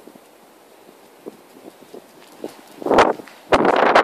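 Light, scattered footsteps on a hard rooftop surface, then a loud rush of noise in the last half-second.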